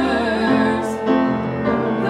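A solo voice singing sustained notes with vibrato in a classical style, accompanied by piano and cello.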